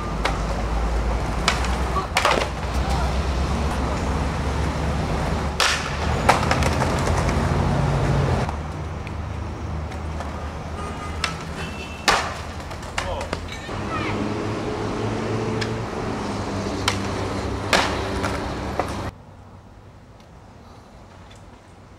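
Skateboard rolling and grinding along a ledge, with several sharp board knocks and landings spread through, over a loud steady low rumble.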